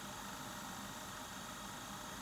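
Faint steady hiss of room tone; the brush spreading top coat on the nail makes no distinct sound.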